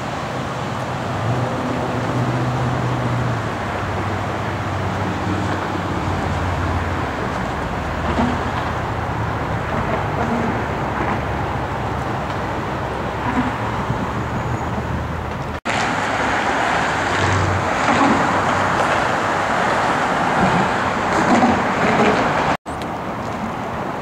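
Steady road traffic noise of cars passing, with low engine hum early on; the sound cuts out abruptly twice, about two-thirds through and near the end.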